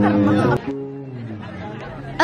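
A voice ends about half a second in, then background music continues more quietly with long held notes that drift slightly downward.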